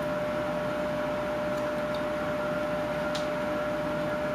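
A small carving knife cutting into a wood block, two faint crisp cuts, over a steady hum and room hiss.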